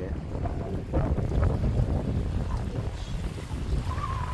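Wind buffeting the phone's microphone: a steady low rumble, with faint voices far off.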